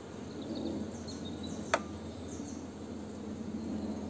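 Honeybees humming steadily from an open hive, a calm colony, with faint bird chirps and a single sharp click a little before halfway.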